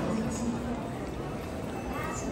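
People walking with luggage on a hard terminal floor: irregular footsteps and clattering knocks under a faint murmur of voices.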